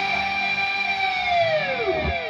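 Ernie Ball Music Man Majesty electric guitar playing a sustained lead note. Near the end the pitch sinks away in a run of falling, echoing repeats.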